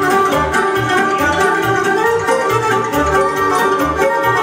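Live Romanian folk dance music in the hora style, played instrumentally by a band with accordion and electronic keyboard over a steady pulsing bass beat.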